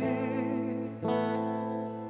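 Steel-string acoustic guitar strummed: a chord rings out, and another is strummed about a second in, fading away.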